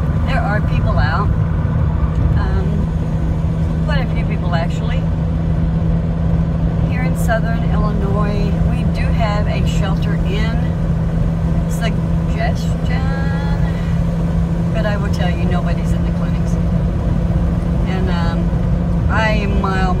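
Car interior road noise while driving: a steady low rumble with a steady low hum, heard from inside the cabin.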